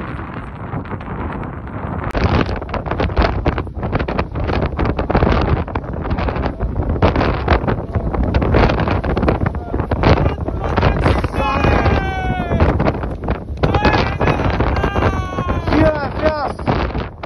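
Strong wind buffeting the microphone in gusts. From about eleven seconds in, a person's voice calls out in short rising and falling cries over the wind.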